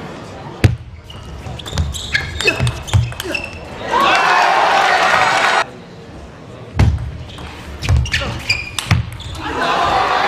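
Table tennis ball cracking off rackets and bouncing on the table in a short rally. About four seconds in, cheering and applause break out for a second and a half. A second quick rally of sharp ball hits follows, and cheering starts again near the end.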